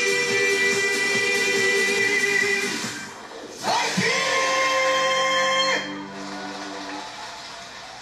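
A male singer holds two long notes over a live band playing a Korean trot song, the second note sliding up into pitch before it is held. The backing music then carries on more quietly.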